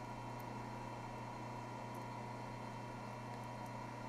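Steady low electrical or machine hum with a faint steady higher tone, even in level throughout; no distinct clicks or knocks from the clamp being fitted.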